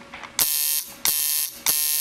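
Coil tattoo machine buzzing in three short runs of about half a second each, switched on and off in turn.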